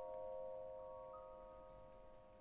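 Quiet orchestral opera music: a held chord of sustained notes, with new notes added one by one and left ringing.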